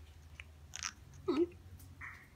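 African grey parrot biting into a gum nut with its beak: a few short, crisp crunches over a low steady hum.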